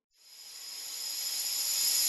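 A rising swell of hissing noise with a few high ringing tones, starting after a moment of silence and building steadily in loudness: an editing riser sound effect leading into music.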